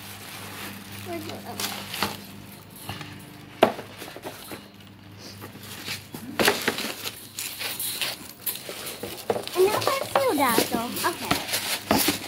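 Tissue paper rustling and a cardboard shoebox being handled as shoes are packed back in, with one sharp knock a few seconds in. Voices come in near the end.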